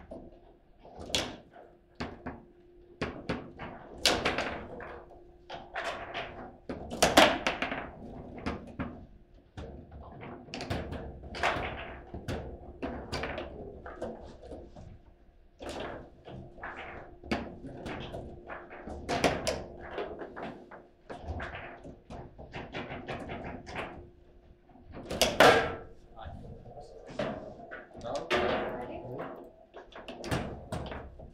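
Table football game in play: irregular sharp clacks and knocks as the ball is struck by the plastic players and rattles off the rods and table walls, with a few much louder hits, the loudest about 7 and 25 seconds in. One shot during it goes in for a goal.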